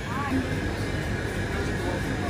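Steady low rumble of street traffic and shop ambience, with a brief snatch of faint voice right at the start.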